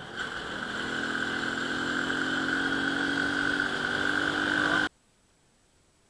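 Euro Rapido 110 underbone motorcycle's small four-stroke single-cylinder engine pulling under acceleration, with wind and wet-tyre hiss, its pitch and loudness slowly rising. It cuts off abruptly near the end.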